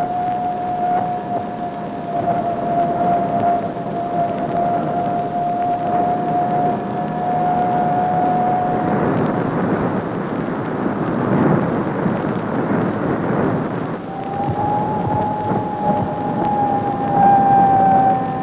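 AN/PPS-5 ground surveillance radar's Doppler audio signal: the characteristic tone of a moving three-quarter-ton truck. A steady high tone gives way to a rough, rushing rumble about halfway through, and a slightly higher steady tone takes over near the end.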